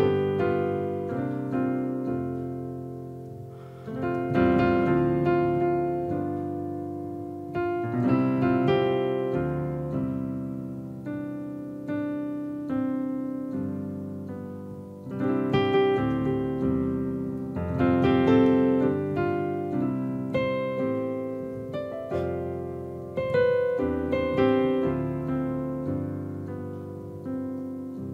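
Roland RD-2000 digital stage piano playing its "Stage Grand" grand-piano sound: slow two-handed chords struck every couple of seconds and left to ring and fade. The player finds this sound boomy and uninspiring.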